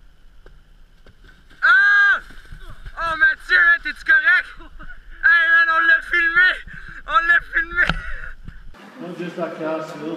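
A person's high-pitched yelling cries: one long arched cry about two seconds in, a string of short rising-and-falling cries, then another long held cry and a few short ones. Near the end it cuts to a lower man's voice over a steady hum.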